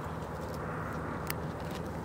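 Steady low outdoor background rumble with a faint hum in it, and one light click a little past halfway.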